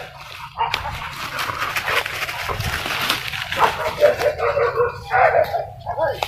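A pack of hunting dogs yelping and barking excitedly during a chase. A dense burst of noise fills the first half, then quick, high, repeated yelps follow in the second half.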